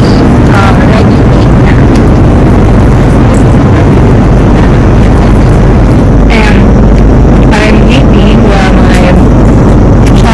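Loud, steady roar of jet airliner cabin noise. Brief voices rise and fall faintly over it in the second half.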